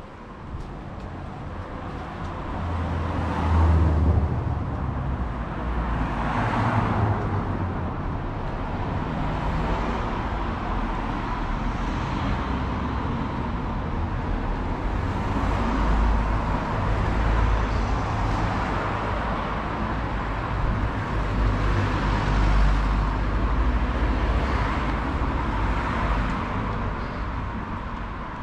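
Road traffic on a town street: a steady low rumble of vehicles, swelling briefly about four and seven seconds in.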